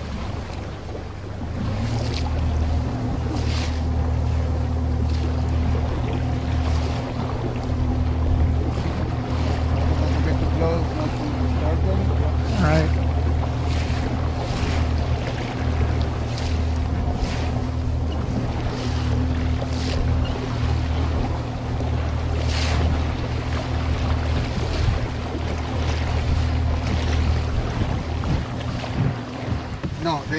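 Outboard motor of an inflatable boat running steadily, starting about a second in, over wind and water noise.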